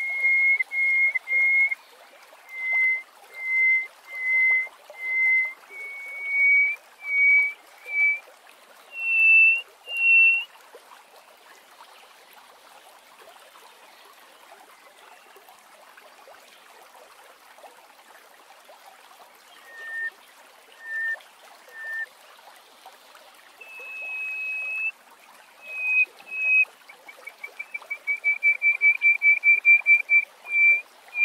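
Greater hoopoe-lark singing: a series of clear piping whistles that climb in pitch note by note over about ten seconds. After a pause come a few lower notes, then a longer high note, and near the end a fast rippling trill of quick whistles.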